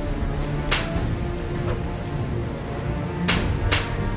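Steady rain falling over a low music score, with three sharp impact hits from a staged fistfight: one about a second in and two close together near the end.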